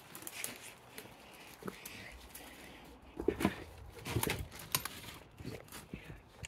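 Irregular footsteps crunching and knocking on rubble and broken floor debris as a person clambers into a derelict building, busier in the second half, with a couple of short grunts from the effort.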